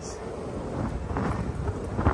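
Steady wind rush on the microphone and low road rumble while riding a Segway Ninebot ES4 electric scooter over city asphalt.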